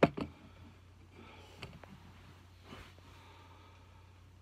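An aluminium beer can set down on a table: a sharp knock at the very start and a softer second one just after, followed by faint rustles and small ticks over a steady low hum.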